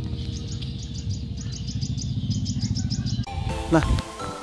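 A small bird chirping rapidly, an even series of short high chirps about six a second, over a low rumble. Music with a melody comes in near the end.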